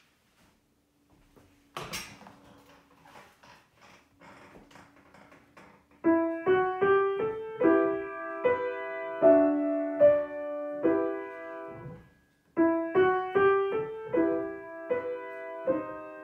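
Kawai upright piano played with both hands, a slow, simple melody over chords, starting about six seconds in and pausing briefly a little past halfway before going on. A knock and faint rustling come before the playing starts.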